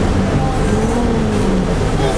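Steady low rumble of background noise, with faint voices in the distance.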